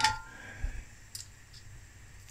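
Metal tongs clinking against a cast iron skillet and a small metal case as the case is lifted out: one clink with a brief ring at the start, then a couple of faint clicks.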